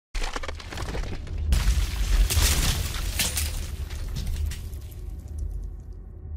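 Logo-intro sound effect of stone slabs cracking and crumbling over a deep rumble. It starts suddenly, with a louder crash about a second and a half in and a few sharp cracks after it, then fades over the last couple of seconds.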